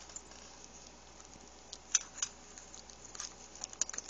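A few light clicks and rustles of small objects shifting in a bag as a Chihuahua noses through it. The sharpest come about two seconds in and in a cluster near the end.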